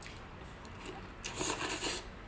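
Close-up mouth sounds of a person slurping and sucking a long strip of red chili pepper into the mouth, with a loud hissing slurp in the last half-second.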